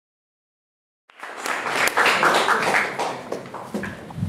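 Audience applauding. It starts suddenly about a second in and fades near the end.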